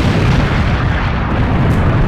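Explosion sound effect: a loud, sustained rumble with a hissing upper range that thins out toward the end.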